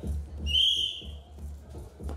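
A referee's whistle blown once, a single steady high blast of just under a second, signalling the start of the wrestling bout. Background music with a steady beat runs underneath.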